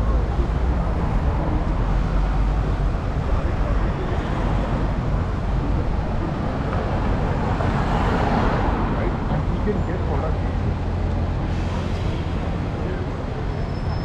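Busy city-street ambience: steady road traffic with a low rumble and the voices of passers-by.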